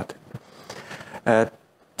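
A pause in a man's speech: quiet room tone broken by one short voiced sound, like a hesitation syllable, a little past the middle.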